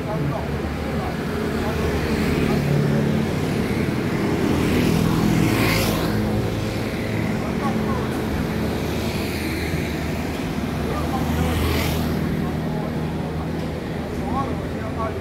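A Taoist xiaofa ritual troupe chanting an incantation in unison: a group of men's voices holding long, steady tones. Passing traffic swells up about halfway through and again near the end.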